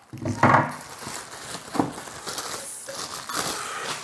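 Monitor packaging being handled as parts are lifted out: crinkling and rustling with a few light knocks.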